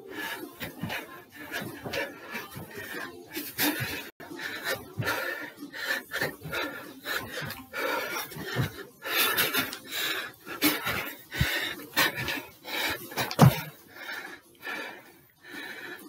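A man panting hard as he climbs a staircase, his footsteps knocking on the stairs.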